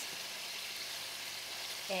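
Ground beef slider patties sizzling steadily in a hot sauté pan over medium-high heat, five minutes into browning on the first side.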